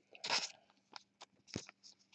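Trading cards being handled close to the microphone: a short papery rustle just after the start, then a few light clicks and a sharper knock about one and a half seconds in.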